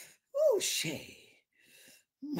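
A woman's breathy vocal exclamation, its pitch falling steeply, followed by a faint breath near the end.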